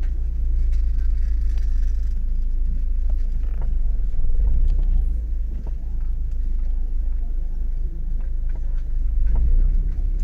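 Busy pedestrian street ambience: a steady low rumble throughout, with faint chatter of passing shoppers.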